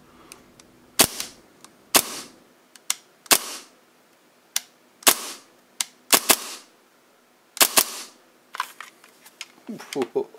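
Gas blowback Hi-Capa airsoft pistol with an Airsoft Masterpiece .22LR slide firing about eight single shots roughly a second apart, two of them in quick pairs. Each shot is a sharp snap of the slide cycling with a brief hiss trailing after it, and lighter clicks of handling come in between.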